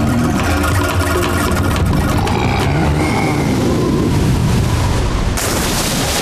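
Cartoon sound effects of a giant flying bison lumbering heavily through snow and slush: a dense low rumble, with a sudden louder rush of spraying snow about five and a half seconds in.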